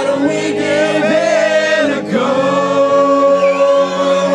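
Live band playing a song with singing, the voices holding long notes over guitar and the band.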